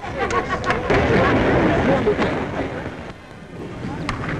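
Cricket crowd cheering and shouting, a mass of voices that swells about a second in and dies down near three seconds.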